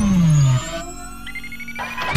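Electronic intro sound effects: a synthesized tone sweeping steeply down in pitch, ending about half a second in. Quieter held synth tones follow, with a brief rising tone partway through.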